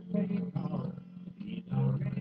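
A man singing loudly along with a recorded country song.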